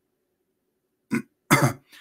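A man coughs after about a second of silence: a short cough, then a louder one about half a second later.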